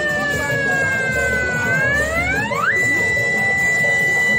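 An electronic siren wailing: one high tone that slides slowly down, swoops low and back up about two and a half seconds in, then holds steady at a high pitch.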